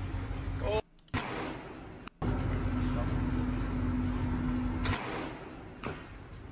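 Low rumble of a container ship manoeuvring close alongside a quay, with a steady hum from about two seconds in to near the end. The sound cuts out abruptly twice in the first two seconds.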